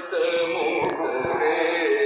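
A song playing: a male voice singing long, held notes over music.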